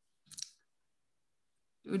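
A brief cluster of a few faint, quick clicks about a quarter second in, followed by silence.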